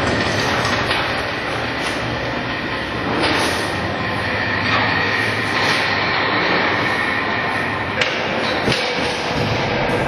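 Motorised automatic door running along its steel rail: a steady rolling rumble with a high whine from the drive, which stops with a clunk about eight seconds in, followed by another knock.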